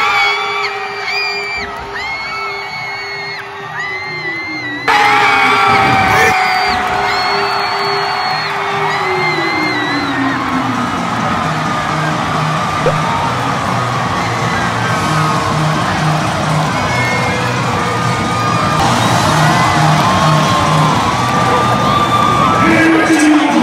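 Stadium crowd screaming and cheering at a goal. About five seconds in it jumps louder into a dense crowd din with music and a steady low beat.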